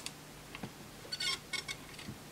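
Faint small metallic clicks and taps of tweezers and a soldering iron tip on a circuit board's tin shield can while its solder tabs are heated to lift it off. A short cluster of clicks with a slight metallic ring comes a little over a second in.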